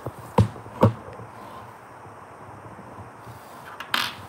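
Two sharp knocks about half a second apart, with a brief ringing: a small spent bullet striking a hard tabletop. A lighter click follows near the end.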